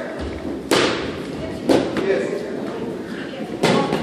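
Boxing gloves landing punches during sparring in a ring: three sharp thuds, a little under a second in, just before two seconds, and near the end.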